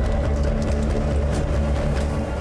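A loud, steady low rumble with scattered faint clicks, from the TV episode's soundtrack.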